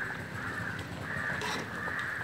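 A crow cawing repeatedly, a string of harsh calls each about a third of a second long. About halfway through, a metal ladle scrapes against the wok.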